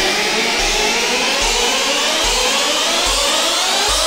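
Bounce dance music in a build-up: several synth sweeps rising steadily in pitch over a sparse low bass thump that comes a little more than once a second.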